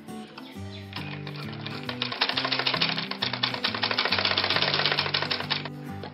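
Usha sewing machine stitching through cloth: a fast, even rattle of the needle and feed that starts about a second in and stops shortly before the end, over background music.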